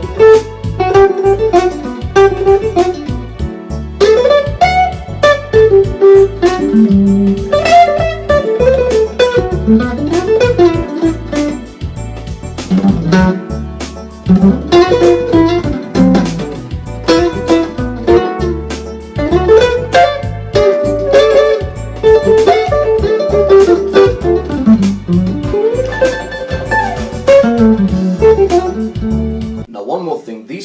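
Archtop hollow-body electric guitar played fingerstyle, a bluesy single-note jazz solo over a D major seven backing track with a steady beat and bass. The backing stops just before the end.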